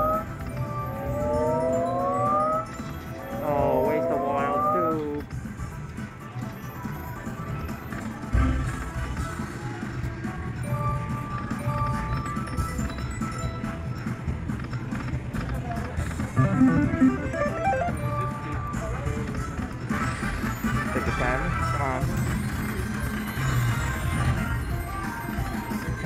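Buffalo Gold video slot machine sound effects: three rising electronic glides in the first five seconds as the remaining reels spin with two gold bonus coins already landed, then further reel-spin tones and short beeps over casino background noise with murmuring voices.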